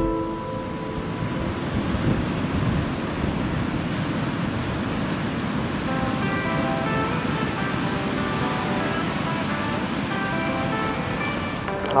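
Steady rushing noise throughout. Soft, held music notes come in about halfway.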